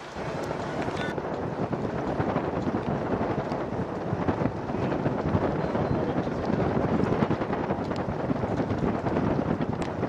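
Gusty wind buffeting the microphone, a rough, rushing noise that swells and dips throughout.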